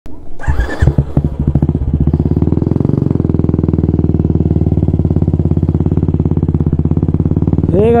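Royal Enfield Classic 350 Signals' single-cylinder engine running under way, a steady train of evenly spaced firing beats, through an aftermarket exhaust. A short, louder noisy burst comes about half a second in.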